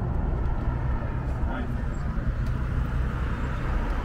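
Steady low rumble of a car running, heard from inside the cabin, with faint voices in the background.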